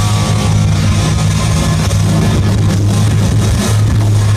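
Hard rock band playing live: electric guitars, bass and drum kit, loud and dense without a break.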